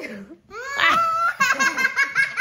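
Young boys laughing hard: a high-pitched run of laughs, pulsing several times a second, that starts about half a second in.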